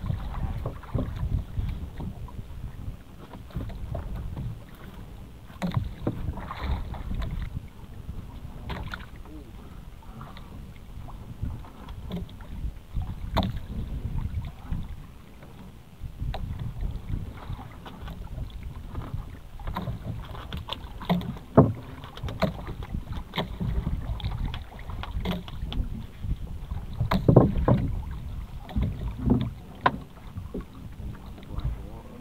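Small boat on the sea: a low, uneven wind rumble on the microphone, with irregular knocks and clicks scattered through it.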